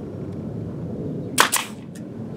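Pneumatic nail gun firing a single nail into OSB: one sharp shot about a second and a half in, followed by a brief hiss.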